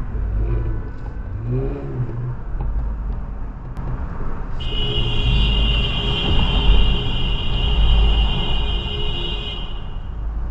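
Car cabin engine and road rumble, then a car horn sounds about halfway through and is held steady for about five seconds.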